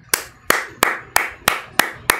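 One person clapping slowly and steadily, about three claps a second.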